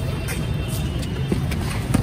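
Steady low rumble of court ambience with two short knocks in the second half, a basketball bouncing on concrete.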